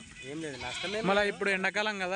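Sheep and goats in a grazing flock bleating, several short quavering calls one after another, thickest in the second half.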